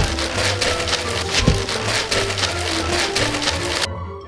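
Background music with a steady bass line and a quick, even beat, cutting off abruptly just before the end.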